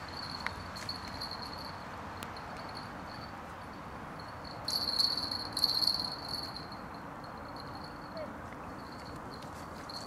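Steady rain hiss at a riverbank, with a constant thin high-pitched whine running over it. About halfway through comes a second or two of louder rustling and sharp clicks from the angler handling the rod and reel.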